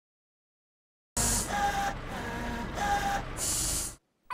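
A cartoon machine sound effect of mechanical whirring and clatter with short steady tones. It starts suddenly about a second in and is cut off abruptly.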